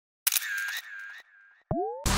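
Intro sound effects: a camera shutter clicking sharply a few times, under a high wavering tone that fades, then a short rising swoop near the end.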